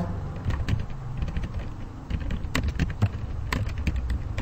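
Typing on a computer keyboard: a run of irregular key clicks, with a few louder keystrokes in the second half.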